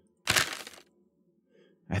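A paper-rustle sound effect from a sound library playing back once: a single short, crisp crackle of about half a second that starts a quarter second in and fades out.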